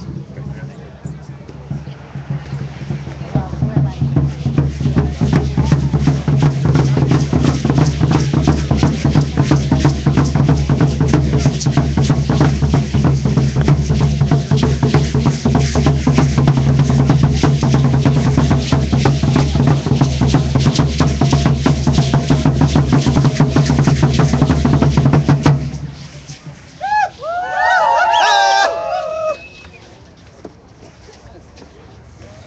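Drums beaten in a fast, steady beat, building up a few seconds in and stopping abruptly about four seconds before the end. A few short, high, gliding calls follow.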